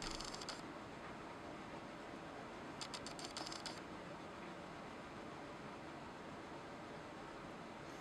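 Light clicking and scraping of a steel digital caliper's sliding jaw being run in and set against a freshly bored hole, in two short bursts: at the start and about three seconds in. A faint steady hum runs underneath.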